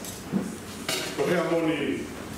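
A single sharp click about halfway through, then a man's voice speaking.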